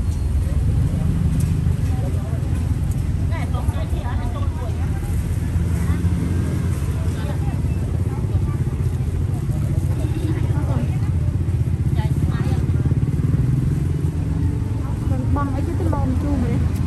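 Busy outdoor market ambience: a steady low rumble with faint, indistinct voices of people talking around the stalls.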